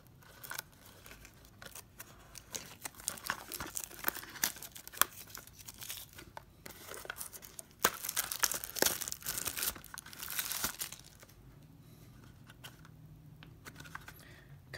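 Clear cellophane wrapper being torn and peeled off a small cardboard trading-card box, crinkling and crackling in uneven spurts. The crinkling dies down about eleven seconds in, leaving a quiet stretch near the end.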